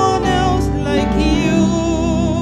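A woman singing gospel worship into a handheld microphone, holding long notes with vibrato over instrumental backing, moving to a new note about one and a half seconds in.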